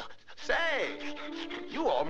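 A cartoon character's voice giving two wavering rise-and-fall wails, about half a second in and again near the end, over a held note of orchestral music.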